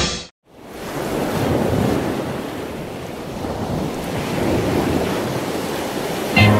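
Sea surf washing on a shore, a steady rushing wash that fades in right after a short music passage cuts off near the start.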